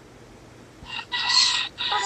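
A rooster crowing once, starting about a second in: a short first note, a long held note, then a falling final note.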